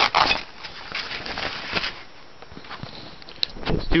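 Rustling of a nylon field bag and the crackling rip of its stiff velcro top closure being pulled apart, hard to open, with a loud handling knock at the start.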